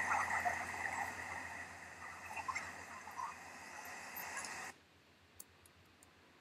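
Outdoor nature ambience from the clip's sound track, a dense steady chorus of calling animals, played back at nearly double speed. It fades a little and cuts off suddenly about three quarters of the way through, when playback stops.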